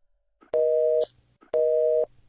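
Telephone busy tone: two half-second beeps of a steady two-pitched tone, half a second apart, the line dead after the caller's call ends.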